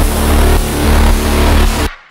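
An electronic body music (EBM) loop playing back from a DAW project, with a heavy sub bass under dense, noisy synth layers. It cuts off abruptly near the end.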